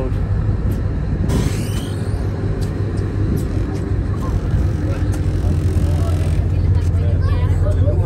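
Low, steady drone of a moored tour boat's diesel engine idling, heard louder for a few seconds near the end.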